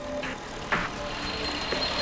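Street traffic noise of passing cars and motorbikes under a light background music score of short notes stepping between pitches.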